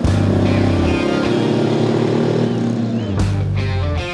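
Cadillac-engined Ford Model A hot rod coupe driving by under power, a deep, loud engine note whose pitch falls near the end.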